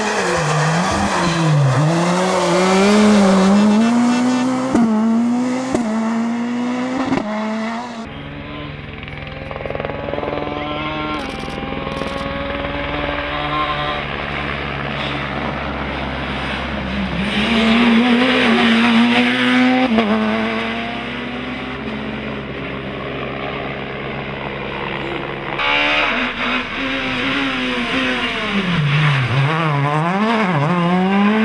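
Rally cars driven flat out on a special stage, among them a Škoda Fabia S2000 with its 2.0-litre four-cylinder engine: the engine note climbs through the gears with sharp drops at each shift, dips as the driver lifts or brakes for a corner, then picks up again. The sound breaks off and restarts twice as one car gives way to another.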